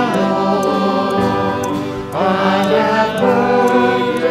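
Church music: voices singing a slow hymn with long held notes.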